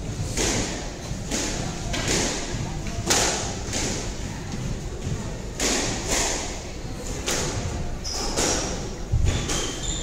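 Squash rally: the ball is struck by rackets and hits the court walls, a string of sharp thuds about every half second to a second, echoing in the court.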